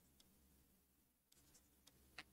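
Near silence, with a few faint taps and short scratches of a stylus writing on a tablet.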